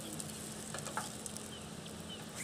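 Butter and the last few mushrooms sizzling quietly in a RidgeMonkey pan, with a few light clicks of metal tongs picking mushrooms out of the pan.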